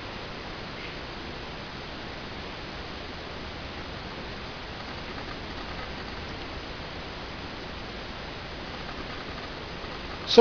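Steady, even hiss of background noise, with no distinct clicks or knocks.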